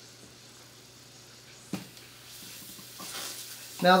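Steam hissing from a needle injected into an acoustic guitar's glued neck joint, fed from a pressure cooker to soften the glue for a neck reset. The hiss is faint at first and grows louder near the end, with a single click a little under two seconds in.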